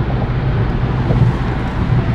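Steady road and engine noise inside a car cabin while driving on an expressway.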